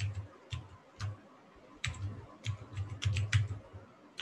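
Typing on a computer keyboard: about a dozen irregular keystrokes that come closer together in the second half.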